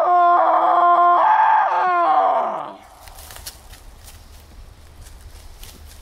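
A man giving one long, loud made-up animal call through cupped hands, meant to lure a chupacabra. It sweeps up at the start, holds one steady note, and drops off after about two and a half seconds.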